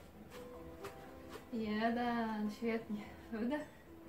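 Dance workout music playing, with a steady beat and held keyboard notes. About halfway through, a voice holds one long note, then makes two short sounds.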